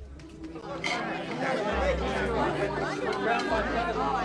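A group of people talking over one another, an overlapping babble of voices with no single speaker standing out. It is quieter for about the first second, then the chatter swells and carries on.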